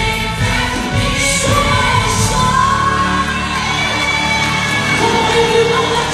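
Live gospel music: a woman singing lead through the PA with a band behind her, holding long sung notes over a steady beat.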